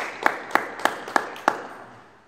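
Hand clapping in a sports hall: a steady run of sharp claps, about three a second, that thins out and stops near the end.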